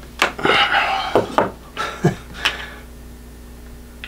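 A plastic bottle cap cracking and crumbling under a wooden block pressed down hard to force a watch caseback on. A sharp crack, about half a second of crunching, then four more sharp cracks over the next second and a half.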